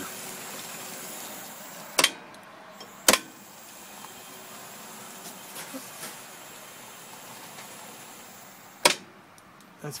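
Kone bridge crane's drive motor at the far end running quietly in forward and reverse, a steady low whir. Three sharp clicks stand out, about two seconds in, a second later, and near the end; the running sound drops away after the last one.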